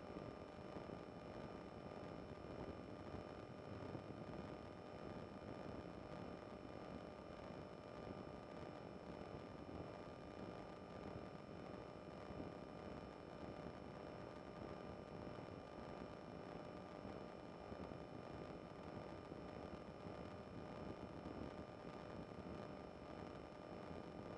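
Faint steady hiss with a few thin, unchanging electrical tones: the idle noise floor of an intercom or radio audio feed with no one talking. The microlight's engine and wind are not heard.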